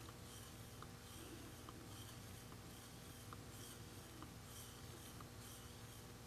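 Faint, slow scraping of a wooden craft stick against the bottom of a plastic cup, stirring clear two-part epoxy resin, with a soft swish and tick about once a second.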